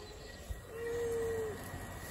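A bird cooing: one steady low note lasting just under a second, about halfway through.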